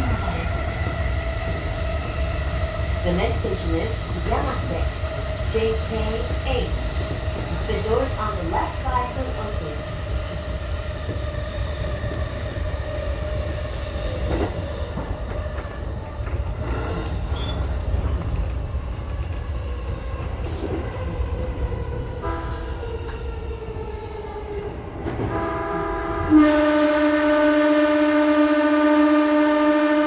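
Electric commuter train heard from the driver's cab: the wheels rumble on the rails and a motor whine slowly falls in pitch as the train slows. Near the end a loud, steady tone with many overtones comes in and holds.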